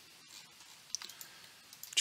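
A few faint, scattered clicks from a computer mouse and keyboard being worked, the sharpest about a second in.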